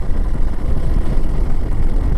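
Motorcycle under way: a steady rush of wind and riding noise on the rider's camera microphone, heaviest in the low end, with no distinct engine note standing out.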